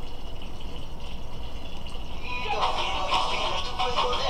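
A low steady hum, then about halfway through music with voices starts playing in the background, like a television or radio.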